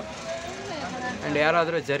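Mostly a man talking, strongest in the second half, over a faint steady background noise inside a bus.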